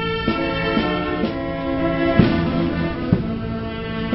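Brass band music: held chords that change every second or so, with two sharp percussion strikes about two seconds in and a second later.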